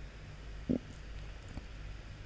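A pause in speech: steady low background hum, with one brief low sound a little past a third of the way in and a few faint clicks near the end.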